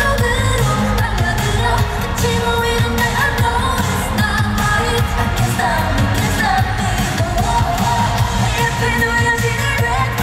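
K-pop girl group singing live over loud pop backing music through an arena sound system, with heavy bass and a steady beat.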